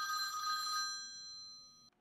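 A telephone ringing: one steady ring that fades away over the second half and stops just before the end.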